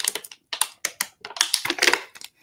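Drinking water from a plastic bottle: a run of short, irregular clicks and swallows.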